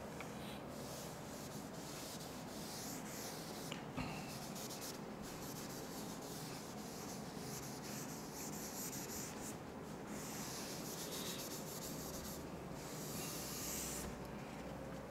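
Faint, repeated rubbing strokes of a duster wiping chalk off a chalkboard, each a second or so long.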